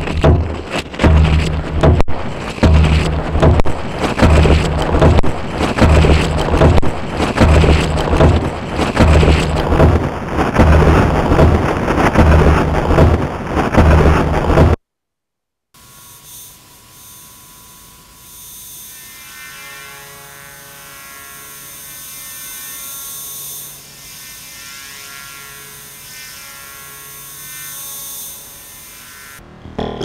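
Electro-acoustic music from a KOMA Field Kit and Field Kit FX. First, a loud, noisy texture over a regular low thump about twice a second, played with a hand in a trailer of dry leaves. After a sudden cut comes a much quieter passage of repeating, echoing pitched tones that slowly swells and then falls away near the end.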